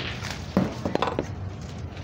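A few short knocks and clacks of hard plastic as the carpet cleaner's parts are handled and moved, over a steady low hum.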